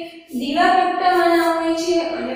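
Singing voice holding long, steady notes, with a short break for breath just after the start.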